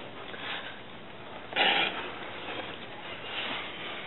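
Mostly quiet, with one short breathy huff about one and a half seconds in: a man with a spoonful of dry ground cinnamon held in his closed mouth, breathing it out through his nose.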